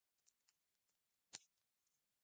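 A loud, steady, very high-pitched single tone that starts just after the beginning and holds at an even pitch and level, with a faint click partway through.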